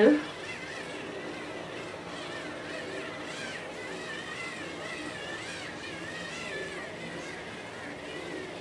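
Small battery-powered facial cleansing brush running steadily with a faint whirr as it is worked over wet, cleanser-covered skin.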